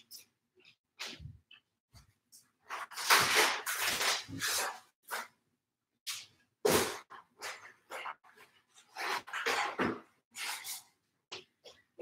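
Scattered knocks and rustling noises from off-camera as someone searches for and fetches a yoga block, in irregular bursts with short gaps between.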